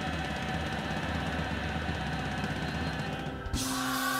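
Gospel church band playing a dense, bass-heavy instrumental passage. About three and a half seconds in, the choir comes in singing on a held chord.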